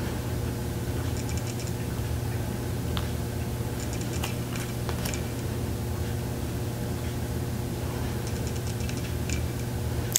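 Steady low hum and rushing of a central air conditioner running, with a few faint clicks and ticks of stiff playing-card-sized tarot cards being handled and slid across one another.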